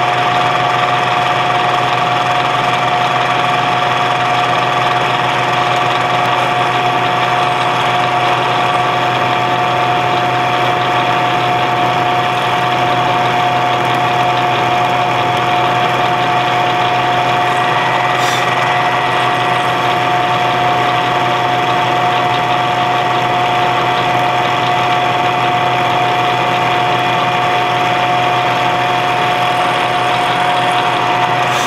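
Milling machine running an end mill through mild steel plate, cutting away the webs between a row of drilled holes. A loud, steady machine whine with a constant pitch.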